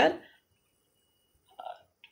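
A woman's lecturing voice trails off, followed by about a second of silence, then a brief soft vocal sound near the end.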